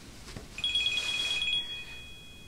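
Incoming-call ringtone: a high electronic tone on two pitches, starting about half a second in, pulsing rapidly at first and then held steady.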